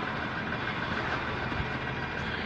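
Steady city traffic noise with the low, even hum of a vehicle engine running.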